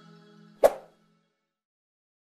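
Closing music fading out on a few held tones, cut off by a single sharp hit a little over half a second in that rings briefly and dies away.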